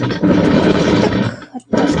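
Knitting machine carriage run across the needle bed, a loud rasp lasting about a second and a half, then a second pass starting near the end.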